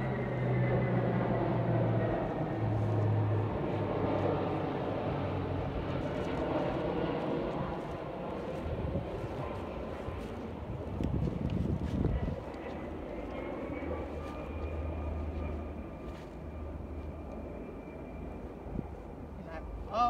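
A distant engine droning steadily, its pitch drifting slowly up and down, with a brief louder rustle about halfway through.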